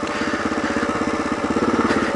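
Kawasaki KLR650's single-cylinder four-stroke engine running steadily under way on a dirt road, a fast, even chug of firing pulses.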